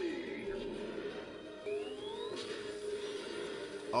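Cartoon episode soundtrack: music with a steady held tone and a rising whine about two seconds in.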